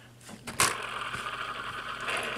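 Bean Boozled game's plastic spinner flicked by hand and spinning: it starts suddenly about half a second in, then gives a steady whirr.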